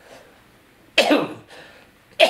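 An elderly man coughs once, about a second in: a sudden cough that fades within half a second.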